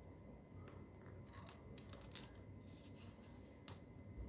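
Near silence with a few faint rustles and light ticks of paper being handled, as a hand reaches to turn an exercise-book page.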